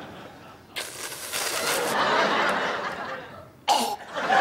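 Studio audience laughing, swelling up about a second in and dying down after a few seconds, with a short, sharp, loud burst of sound near the end.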